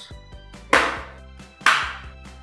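Metal outer cover of a Fractal Design Node 304 case being slid and seated onto the chassis: two sharp, noisy clacks about a second apart, over steady background music.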